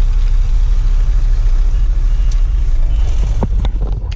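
Truck's diesel engine running steadily, a loud low rumble heard from inside the cab, with a few sharp clicks about three and a half seconds in.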